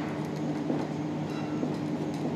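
Steady low room hum, with faint scratches of a marker pen writing on a whiteboard.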